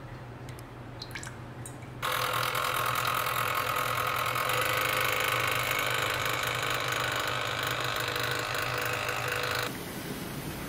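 Secura electric milk frother running, its whisk spinning milk in the steel jug: a steady motor hum with a whine that starts abruptly about two seconds in and cuts off just before the end. A few faint clicks come before it starts.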